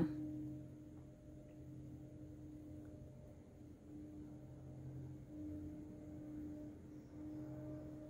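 Quiet room tone: a faint, steady low hum that swells and fades in strength every second or so.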